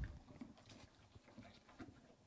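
Near silence in a horse stall, with faint scattered clicks and soft rustles from a horse moving and eating at its feed.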